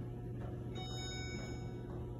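A single electronic elevator chime, one ringing tone beginning about three-quarters of a second in and lasting about a second. Under it, the steady low hum of the Montgomery hydraulic elevator running.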